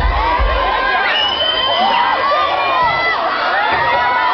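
Concert crowd cheering and screaming, many high-pitched voices at once, with one long high scream about a second in and a few low thumps.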